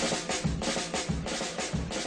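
Background music: a fast, even drum-kit beat with snare and bass drum, about six hits a second.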